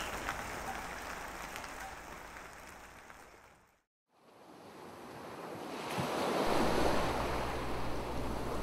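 A rain sound bed fades out to silence a few seconds in. Then ocean waves fade in and build, with a low rumble of surf entering in the second half.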